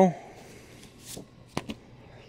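Comic books being handled on a stack, the top issue slid off: a faint papery rustle, a brief swish about a second in, then two quick sharp snaps a little later.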